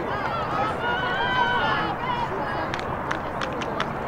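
High-pitched voices of players calling out across an outdoor lacrosse field, with a quick run of sharp clicks near the end.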